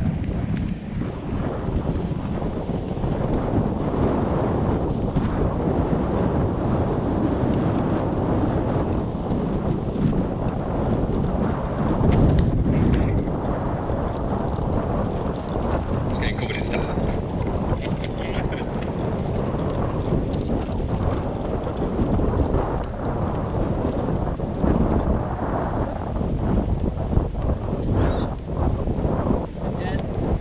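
Wind noise on the microphone of a kite buggy travelling across a sand beach under a power kite: a steady rush with gusts, loudest about twelve seconds in.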